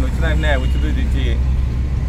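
A man speaking Telugu for about a second, then a pause, over a steady low rumble.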